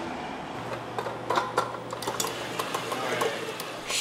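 Electric stand mixer kneading dough with a dough hook: a steady low motor hum starting about half a second in, with a few light clicks and taps.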